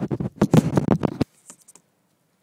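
Handling noise from a handheld camera being set down: fingers and surfaces scraping and knocking right on its microphone for just over a second, then a few light clicks.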